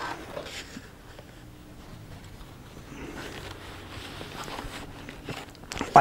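Quiet handling sounds of a clothes iron pressing quilted cotton fabric: faint rustling as the iron and fabric are moved, with a few light taps and knocks near the end.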